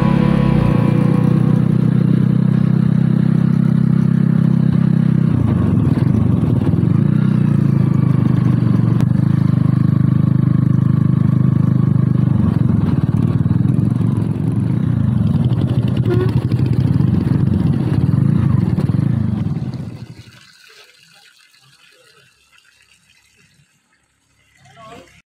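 Motorcycle engine running as the bike rides along, a steady low drone at first and then shifting in pitch, dropping away sharply about twenty seconds in.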